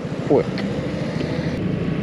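Vespa GTS300 scooter's single-cylinder four-stroke engine running at a steady speed while under way, a constant low note with no revving up or down.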